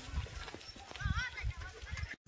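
Irregular low thuds of footsteps on a dirt path. About a second in there is a short, faint, wavering high-pitched call, like a distant child's voice.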